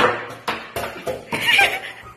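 Quick clacks of chess pieces being set down on the board and a chess clock being pressed during a fast blitz game, several knocks a second apart or less. A brief higher-pitched wavering sound comes about a second and a half in.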